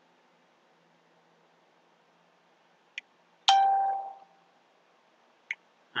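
Near silence, then a small click about three seconds in and, half a second later, a single bell-like chime that rings out and fades over about a second. The chime marks the end of a timed moment of silence.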